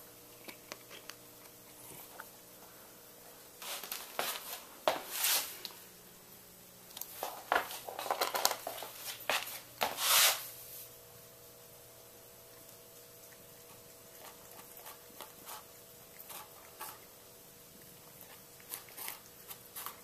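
A cat biting and crunching a dry whole wheat cracker: two bouts of crisp crunches, one about four seconds in and a longer one from about seven to ten seconds, with a few faint nibbles later.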